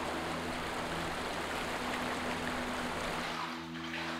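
Floodwater sloshing and swirling as a person wades through it indoors, easing off about three seconds in.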